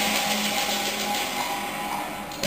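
Teochew opera orchestra playing accompaniment for a stage fight, with steady held notes under a hissing wash.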